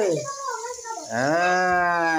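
A long drawn-out call held at one steady pitch for over a second, starting about a second in, after a short falling call at the very start.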